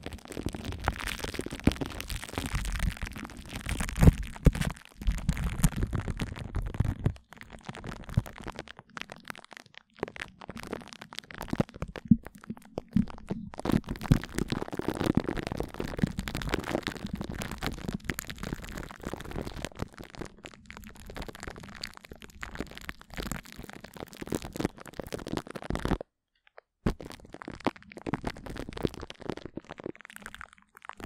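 Glue stick rubbed and dabbed directly on a plastic-wrapped microphone grille: close, sticky crackling and smearing strokes with brief pauses, and one full break of under a second near the end.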